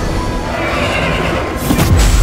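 A horse whinnying over a dramatic orchestral film score, followed by one sharp hit just before the end.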